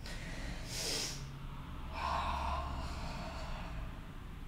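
A woman breathing audibly during a yoga flow: a short, sharp breath about a second in, then a longer, slower breath.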